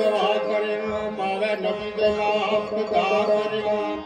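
Live Pothwari folk-devotional music: harmonium drone and sitar with tabla, accompanying the lead singer's chant-like sung phrases.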